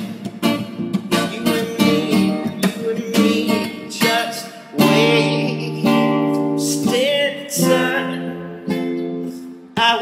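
Acoustic guitar strummed in a steady run of chords.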